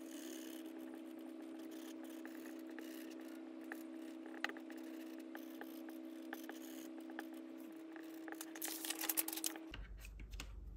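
Pencil eraser rubbing on drawing paper: faint scattered scratches and ticks, busier near the end, over a faint steady hum of a few held tones.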